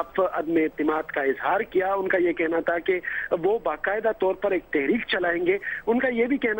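A man speaking Urdu without a break, in a news report.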